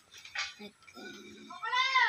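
A single high, meow-like cry near the end, rising and then falling in pitch, after a mostly quiet stretch with faint small sounds.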